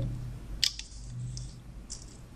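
Small rubber loom bands being stretched and hooked onto the plastic pegs of a Rainbow Loom: a few small clicks and snaps, the sharpest a little over half a second in.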